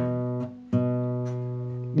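Acoustic guitar's low open E string and its fifth, fretted on the string below, plucked together and left to ring, then plucked again about 0.7 s in and ringing on as it slowly fades: the bare root and fifth of an E chord.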